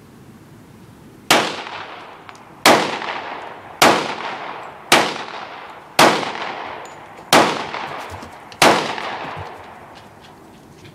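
Springfield Armory 1911 pistol in .45 ACP fired seven times in slow succession, a shot roughly every second and a quarter. Each shot is followed by a long fading echo.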